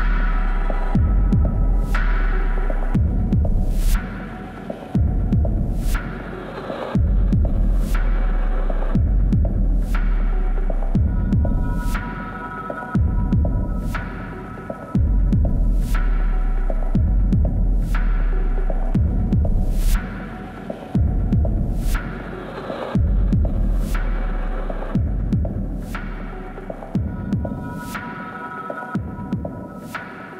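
Dark, droning electronic music from a live set: a deep sub-bass pulse that swells and drops out every few seconds under sharp percussive hits about once a second and a sustained higher tone. It thins out and gets quieter near the end.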